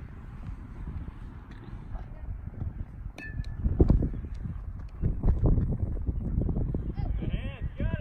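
Wind rumbling on the microphone, with one sharp metallic ping about three seconds in: an aluminium bat hitting a baseball. Near the end a player shouts "got it" as he calls for the ball.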